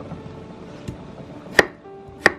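Chef's knife chopping through a peeled cucumber onto a wooden cutting board: a light tap just under a second in, then one sharp chop about a second and a half in.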